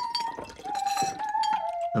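Crockery clinking in a kitchen, with a thin held tone that steps down in pitch twice.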